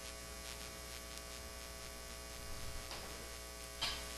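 Low, steady electrical mains hum with no speech over it, and a brief faint click near the end.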